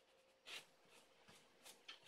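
Near silence with a few faint rustles and soft taps of hands pressing glued tissue paper down, the clearest about half a second in.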